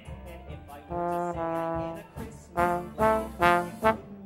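Trombone playing its pit-orchestra part in a show tune, close to the microphone: a held note starting about a second in, then four short accented notes, the loudest near the end, with the band and light drum ticks underneath.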